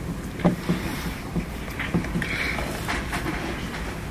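Footsteps of a person walking across a hall floor: irregular soft knocks, a couple a second, over a low steady rumble of room noise.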